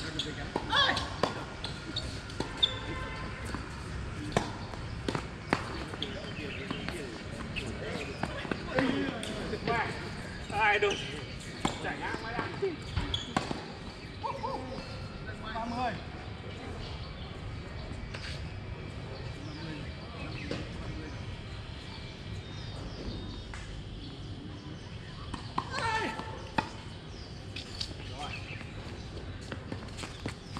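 Tennis balls struck by rackets and bouncing on a hard court, a scattered series of sharp pocks, with people's voices talking at a distance.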